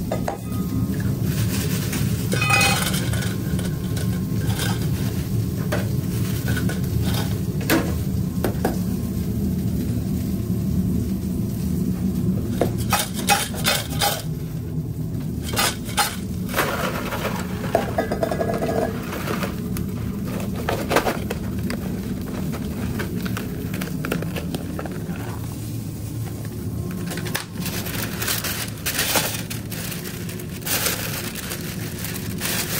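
Commercial kitchen work sounds: scattered metal clinks and clatter as fries are tossed in a stainless steel bowl and handled, over a steady low hum of kitchen equipment.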